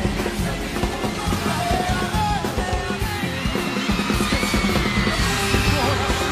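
Live band music from a concert, loud and steady, with a voice yelling and singing over it.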